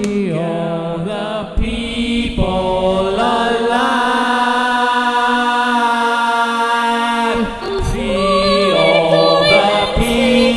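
Choir singing slow, chant-like sustained notes over a steady low drone, with one long held chord in the middle.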